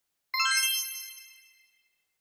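A single bright chime sound effect: a bell-like ding with several ringing tones that fades out over about a second.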